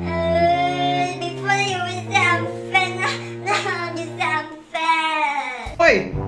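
A young woman wailing and sobbing in high, drawn-out cries, the last one falling in pitch near the end. Background music with sustained low notes runs under the first part, then drops out.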